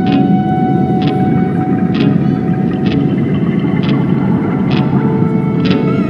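Background music with sustained chords and a soft beat about once a second, the chords changing near the end, laid over the steady low roar of an Airbus A330's cabin and jet engines during the climb after takeoff.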